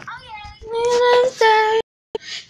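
A young girl singing two long held notes, the second cut off suddenly.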